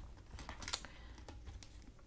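Clear plastic sleeve pages being handled in a ring-bound planner: a few faint, scattered clicks and taps, the clearest about three-quarters of a second in.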